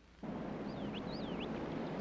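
Steady outdoor wind noise, with a few brief high warbling whistles in the middle.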